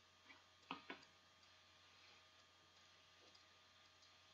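Near silence: faint room tone with two short, faint clicks close together about a second in.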